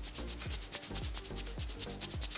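A makeup-removing wet wipe rubbed quickly back and forth across the lips, a fast, even run of scrubbing strokes, as it works at long-wearing lip liner that is hard to remove.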